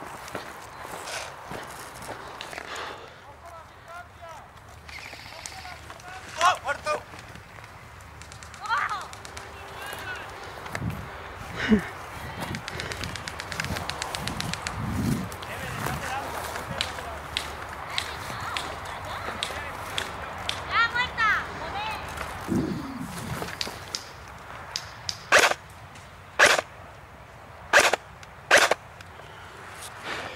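Voices calling out at a distance, with rustling and small clicks from someone moving through dry brush. Near the end come four sharp cracks, each about a second apart.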